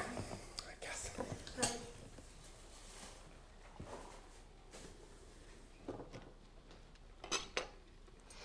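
Cups, saucers and cutlery clinking at a laid breakfast table: scattered light clinks, with two sharper ones in quick succession near the end.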